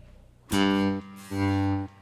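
Waterstone five-string electric bass: two sustained plucked notes, the first about half a second in and the second in the second half, while its tone and pickup controls are being tried.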